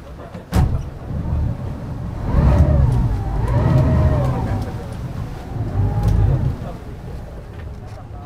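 Speedboat engine rumbling, revving up and falling back in the middle and again briefly near the end, after a sharp knock about half a second in.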